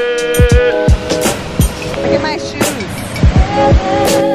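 Background music with a beat: sustained synth-like notes over drum hits.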